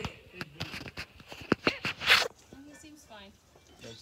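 Handling noise from a phone held close and moving: sharp clicks and knocks on the microphone, with a louder rustling scrape about two seconds in.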